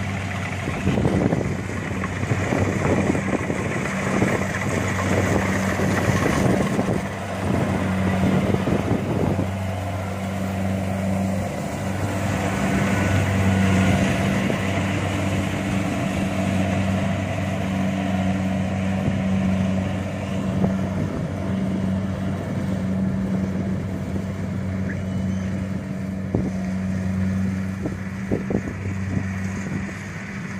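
Rice combine harvester running steadily as it cuts a paddy of ripe rice, its engine a constant low hum with a busier, rougher patch of noise in the first third.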